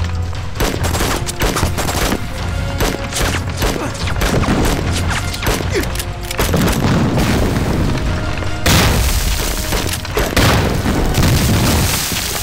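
Staged battle sound effects of rifle fire in rapid volleys and booming blasts, with background music running under them.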